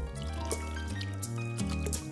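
Instrumental music from a Hindi film song, with held melody notes over a bass line. Over it, liquid poured from a glass trickles and drips into water.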